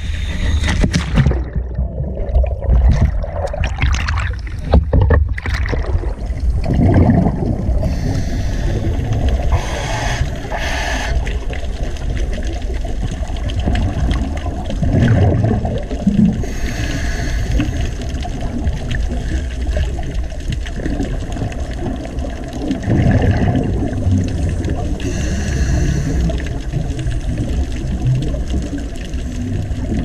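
Water sloshing and splashing as the camera goes under at the waterline, then a steady underwater rumble. Over the rumble, swells of bubbling come every few seconds from a scuba diver's regulator exhaling.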